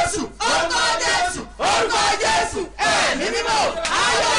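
A woman praying aloud in loud, drawn-out phrases, her pitch rising and falling, with brief pauses for breath between phrases.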